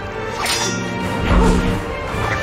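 Action-scene soundtrack: whooshing swings and heavy hits over a held dramatic music score, with the biggest impact about a second and a half in.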